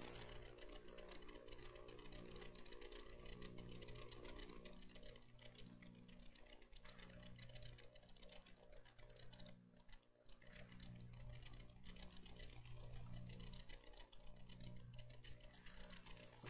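Near silence: faint room tone in a church sanctuary, with a low steady hum and faint, even ticking.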